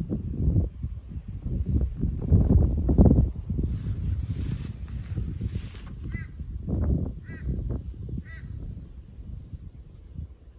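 Wind buffeting the microphone in uneven gusts, loudest in the first few seconds, with a brief high hiss in the middle. Three short, high calls sound about a second apart in the second half.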